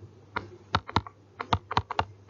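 Stylus tapping on a tablet screen while words are handwritten: about seven sharp clicks at an uneven pace.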